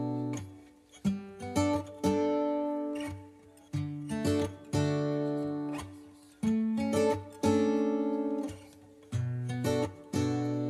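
Background music: acoustic guitar chords strummed in short clusters of about three, every two to three seconds, each chord ringing out and fading.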